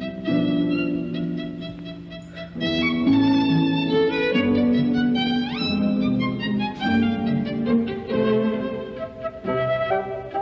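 Orchestral accompaniment score for a silent film, with bowed strings carrying sustained notes. One note slides upward a little past the middle.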